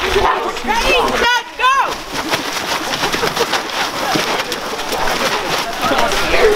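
A group of voices: a few short shouts that rise and fall about a second in, then a busy mix of background voices and quick rustles.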